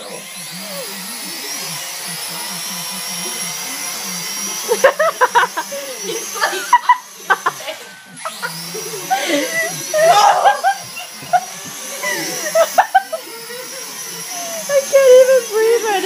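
Small toy drone's electric motors and propellers whining at a high pitch, cutting out a couple of times and spinning back up with a rising whine, as it takes off and flies indoors. Bursts of laughter ring out over it.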